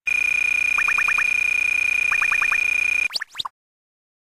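Electronic sound effect: a steady high beep held for about three seconds, with two quick runs of five short chirps laid over it, ending in a few fast rising sweeps that cut off suddenly.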